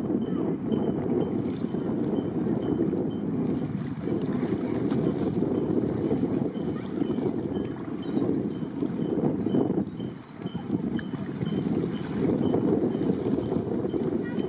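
Wind buffeting the microphone: a loud, gusting rumble that drops briefly about ten seconds in.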